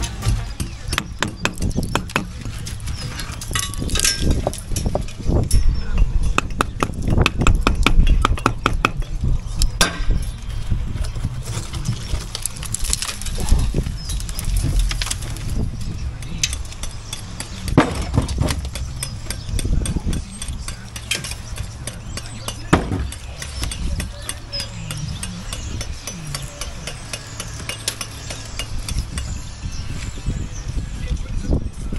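Hammer striking brickwork to knock out the bricks and mortar above a rusted steel window lintel. The sharp knocks come in a fast run in the first third and grow sparser later, with loose brick and mortar rubble clinking as it is broken out.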